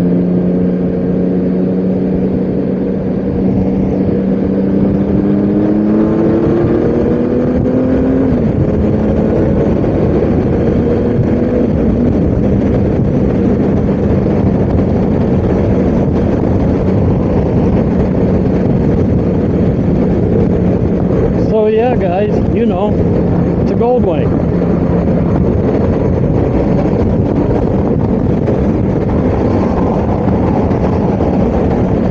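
Honda GL1800 Gold Wing's flat-six engine and wind and road noise at highway speed, heard from the rider's seat. The engine note rises under acceleration, drops at a gear change about eight seconds in, then holds steady at cruise.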